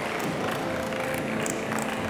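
Audience applause and crowd noise filling a hall, many short claps over a steady wash. A soft held music note comes in partway through, as music begins to take over.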